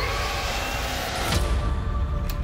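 Dark horror trailer score and sound design: a low rumbling drone under a dense hissing swell, with a thin gliding tone near the start and a sharp accent about a second and a half in.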